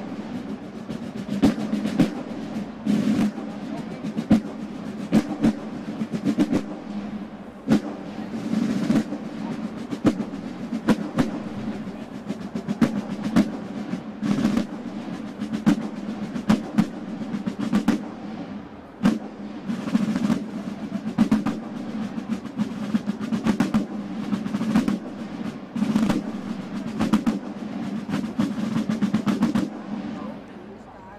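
A drum corps of marching field drums played with wooden sticks: a continuous cadence of rolls and sharp accented strokes.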